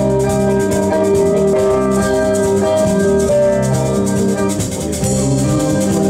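A live band playing: long held electronic keyboard chords over a drum kit, electric guitar and bass, with a steady rhythmic shaking percussion on top.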